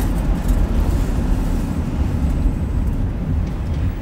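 Steady low rumble of engine and road noise inside the cab of a moving crew-cab work truck.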